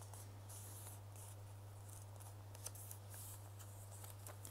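Faint rustling and crinkling of a folded paper sheet being unfolded and smoothed by hand, with a few small ticks, over a steady low electrical hum.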